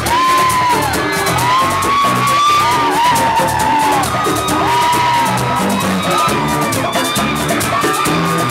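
A live bachata band playing: a sustained, gliding lead melody over guitars and bass, driven by a steady scraped-percussion rhythm.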